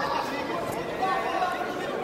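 Several voices talking and calling out at once in a large hall, overlapping chatter with no single clear talker.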